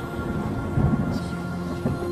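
Logo-reveal music sting: steady synth tones with a deep, thunder-like rumble swelling to its loudest just under a second in, then a sharp hit near the end as the logo comes together.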